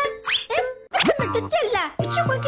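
A cartoon character's voice speaking in Mandarin over light children's background music, with a short rising sound effect near the start.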